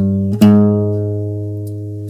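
Nylon-string classical guitar: a low bass note is plucked about half a second in and left to ring, slowly fading.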